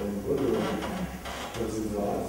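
A man lecturing in German.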